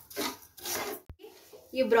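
Wooden spatula stirring broken wheat as it roasts in a kadhai: two scraping, rustling strokes of the grains against the pan, then a single sharp click about halfway through.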